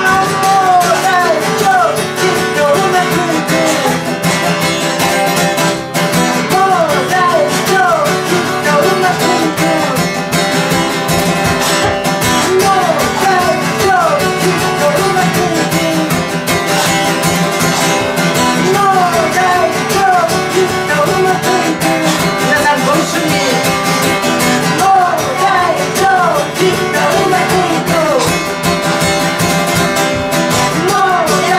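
A man singing a Japanese song while accompanying himself on a strummed acoustic guitar.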